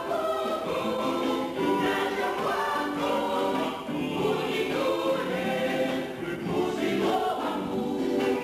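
A choir singing a hymn, many voices together.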